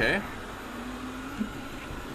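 eufy RoboVac 11S robot vacuum running just after being started, a steady whir from its motor.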